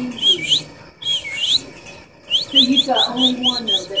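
Six-week-old Miniature Pinscher puppy whining in high, squeaky cries that slide up and down in pitch, with a quick run of short cries about two and a half seconds in.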